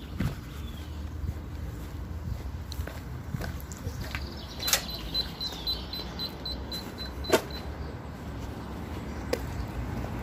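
Handheld phone microphone rubbing against a fabric hoodie while walking, with a few sharp clicks of handling. About five seconds in, a run of short, high electronic beeps at about four a second lasts roughly three seconds.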